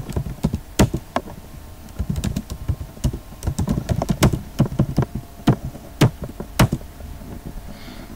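Typing on a computer keyboard: a run of irregular keystrokes, with a handful of sharper, louder key presses standing out among them. The typing thins out in the last second.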